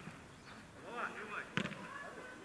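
Sharp thud of a football being struck about one and a half seconds in, with children's voices calling out on the pitch just before it.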